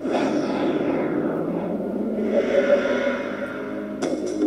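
An advertisement's opening sound effect. A dense, noisy swell starts suddenly, with a whoosh falling in pitch over the first two seconds and a held tone joining about halfway through.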